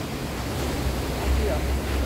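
Beach ambience: an even rush of surf, with wind rumbling on the microphone that grows stronger a little past a second in.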